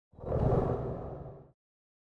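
Whoosh sound effect: one swell of rushing noise that peaks about half a second in and fades away by about a second and a half.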